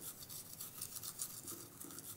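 Toothbrush brushing someone's teeth: faint, quick, repeated scrubbing strokes.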